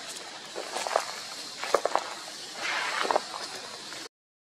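Footsteps crunching through dry leaf litter, a few irregular crackling steps over steady outdoor background noise.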